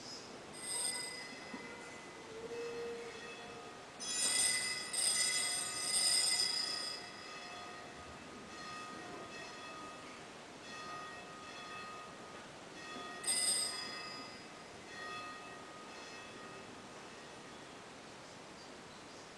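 Altar bells rung by hand in short metallic peals: one about a second in, a longer peal from about four to seven seconds, another just after thirteen seconds and a fainter one near fifteen seconds. The ringing marks a moment of the Latin Mass shortly before communion.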